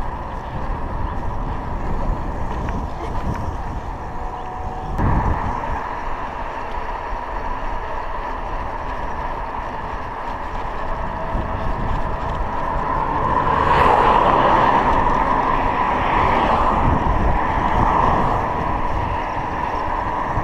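Wind rushing over a GoPro Hero 3's microphone, mixed with tyre and road noise from a bicycle riding along a paved road. A short thump comes about five seconds in, and the noise swells louder for several seconds in the second half.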